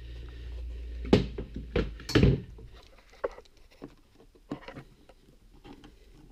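Handling bumps with three loud knocks in the first two and a half seconds, then a few scattered light clicks of a screwdriver working on an air-tube bolt.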